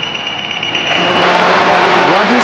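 Electric propeller motors of a Zipline fixed-wing delivery drone spinning up on its launch catapult before launch. A high steady whine in the first second gives way to a growing rush of propeller noise with a low steady hum.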